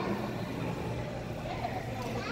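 Steady background din of a busy indoor hall: a constant low hum with distant, indistinct voices.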